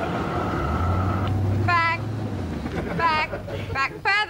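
A car engine running with a steady low hum that fades out after a couple of seconds, heard through the sketch's soundtrack, with short high-pitched cries from people over it.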